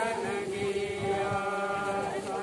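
A group of voices singing slowly together in unison, holding long notes like a hymn or chant.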